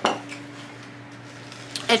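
A single clink of a fork against a dish at the start, ringing briefly, followed by a low steady hum.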